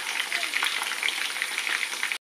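Chicken drumsticks frying in a pan: a steady sizzle of hot fat crackling with many small pops.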